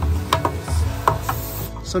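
Battery-powered Milwaukee sprayer running with a low, choppy hum and a few clicks as it sprays soapy water up inside a plastic drum. The hum drops away a little under a second in.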